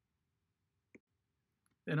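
Near silence with a single short click about a second in, then a man's voice begins near the end.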